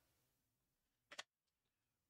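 Near silence with one brief, sharp click about a second in: a trading card snapping as it is slid off the stack in the hands.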